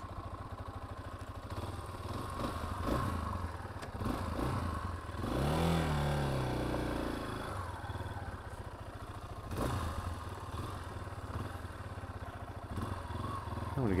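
Yamaha XT250's single-cylinder engine idling, with one brief rev that rises and falls about five seconds in, and a sharp click a few seconds later.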